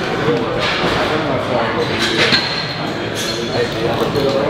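Several people talking at once, overlapping conversation that cannot be made out, in a reverberant gym.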